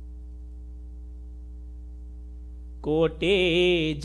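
Steady electrical hum with no other sound for about three seconds, then near the end a man's voice starts chanting a devotional verse in long, wavering held notes.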